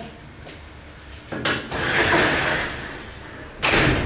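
Garage door being pulled shut: a rushing slide lasting a second or two, then a loud bang as it closes near the end.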